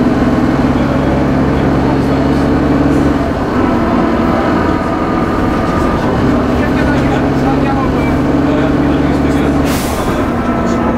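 Diesel engine of a Leyland Titan double-decker bus heard from the lower saloon while the bus is under way. The engine pulls steadily, eases off about three seconds in and pulls again from about seven seconds. A short hiss comes just before the end.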